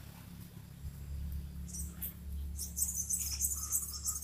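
High-pitched, rapid twittering chirps from a small animal, in a short spell about halfway through and a longer one near the end, over a low steady hum.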